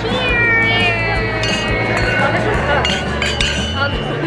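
Wine glasses clinking together in a toast, several sharp clinks, over high, excited voices whose pitch falls in the first second or so, with background music underneath.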